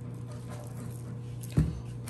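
Ground black pepper shaken from a shaker over a sandwich and chips, a faint light patter, followed by a single sharp thump about one and a half seconds in.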